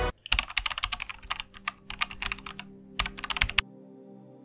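Rapid keyboard-typing clicks, a typing sound effect, running for about three seconds with a short pause before a last burst, then stopping suddenly. Faint held tones remain underneath.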